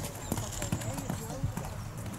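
Hooves of a horse cantering on a sand arena, a string of hoofbeats a few tenths of a second apart, with people talking in the background.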